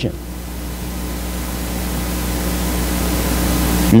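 Steady hiss with a low electrical hum under it, slowly growing louder through a pause in speech: the recording's background noise.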